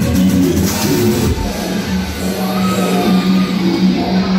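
Loud music played over a nightclub sound system. It has a steady beat and a sustained low note, and the upper end of the beat thins out a little over a second in.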